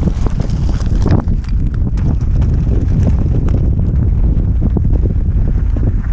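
Wind buffeting a helmet-mounted camera microphone, over the rattle and knocks of mountain bike tyres rolling over loose stones, with the knocks thickest in the first couple of seconds.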